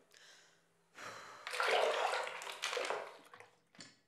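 Bathwater sloshing and splashing in a bubble-filled bathtub as a person moves in it. It starts about a second in, lasts about two seconds and fades out.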